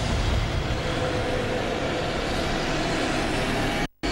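Steady rushing, wind-like noise from the sound effect of an animated interlude, which cuts off abruptly just before the end.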